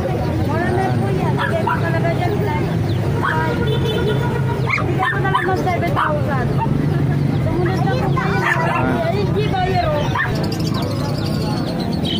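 Dogs barking and yipping in short bursts over a crowd talking.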